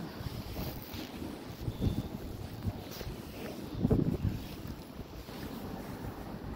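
Wind buffeting the microphone outdoors, a rough rumbling rush with stronger gusts about two seconds in and again around four seconds.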